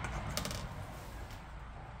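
Plastic funnel being pulled off a water-cooling reservoir and set down on a desk: one light clack about half a second in, with a few fainter ticks after, over a steady low hum.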